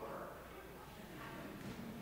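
A quiet pause in a large church: faint, low voices and a steady low room hum.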